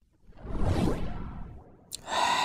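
Whoosh sound effect that swells and fades over about a second as an animated character slides into frame.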